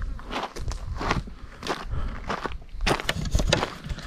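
Footsteps crunching on a stony, gravelly dirt trail at a steady walking pace, about two steps a second.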